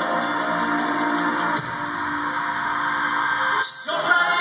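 Live band music, an instrumental passage of a pop song with sustained notes and no singing; the band changes chord about a second and a half in and dips briefly just before the end.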